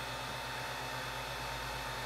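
Ender 3 Pro 3D printer running with a steady hum of several fixed low tones, its extruder stepper motor turning the feed gear and its fans running. The extruder is turning in the wrong direction, set backwards in the firmware.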